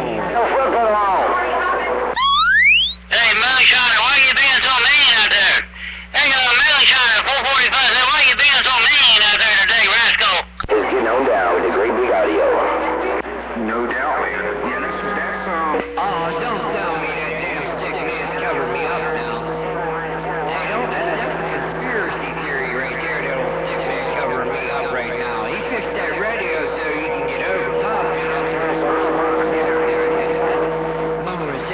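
CB base station receiving distant skip: several far-off voices talk over one another, garbled, with steady heterodyne whistles underneath. A stronger station breaks in about two seconds in with a rising whistle, drops out briefly twice and fades near ten seconds in, leaving the jumble of weaker voices.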